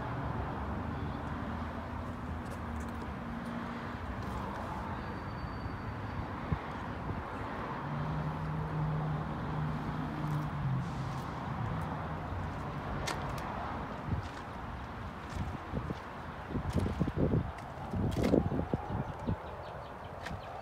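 Steady outdoor background noise with a low hum like distant vehicles. Near the end comes a short run of irregular footsteps on pavement.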